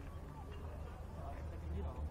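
Faint, distant voices of players and spectators chattering around a baseball field, over a steady low hum.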